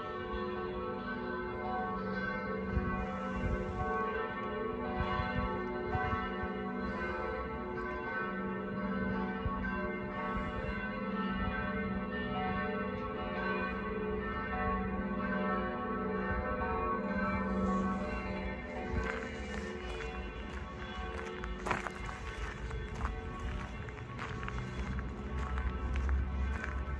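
Church bells ringing, several bells sounding together in a sustained peal. The ringing fades somewhat in the last third, where footsteps come in.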